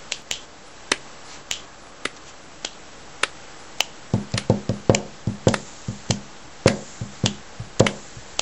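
Body-percussion beat: sharp hand claps about every half second, then, about four seconds in, fingers tapping and knocking on a tabletop join in with a denser rhythm that has a low thud.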